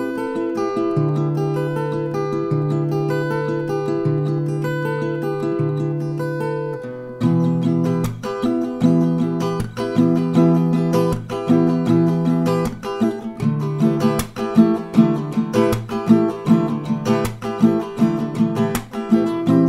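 Acoustic guitar capoed at the seventh fret playing a chord progression. It starts with gently picked notes ringing over slow-changing bass notes, and about seven seconds in it turns to louder strumming with sharp percussive strokes.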